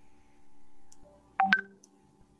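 A short double electronic beep about a second and a half in, over a faint steady hum.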